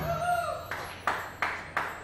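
A last faint pitched note fades out, then four sharp hand claps about a third of a second apart, ringing briefly in the small room.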